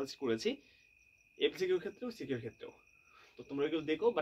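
A man speaking in short phrases with pauses. A steady high-pitched tone sounds behind him the whole time and is plain in the pauses.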